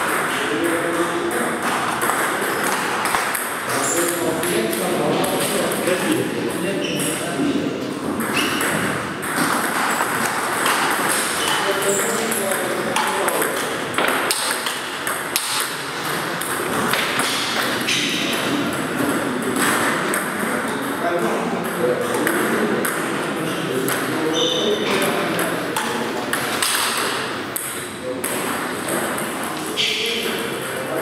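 Table tennis balls clicking off bats and tables in rallies, with indistinct voices in a large hall.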